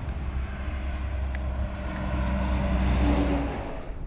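A distant engine drone that swells to its loudest about three seconds in and then fades, over a steady low rumble.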